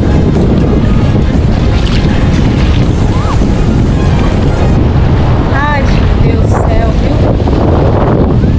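Wind buffeting an action camera's microphone, a loud, steady rumble, with the sea washing behind it.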